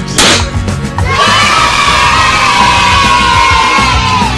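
A confetti popper bang, then a crowd of children cheering in one long held shout that sags at the end, over background music.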